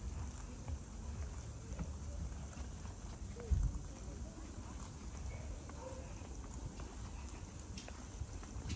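Footsteps of a person walking on a paved street, over a fluctuating low rumble on the microphone, with one louder thump about three and a half seconds in.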